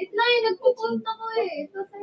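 A young female voice singing, holding short notes that bend and break.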